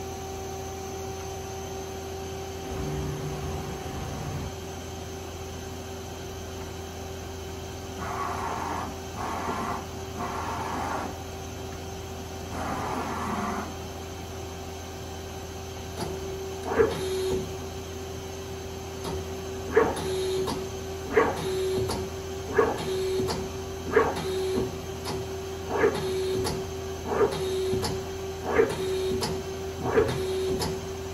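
Mazak Smart 350 CNC turning center running with a steady hum. A few short whirring movements come near the middle. From about halfway on, a regular clunk about every second and a half as the tool turret indexes from station to station.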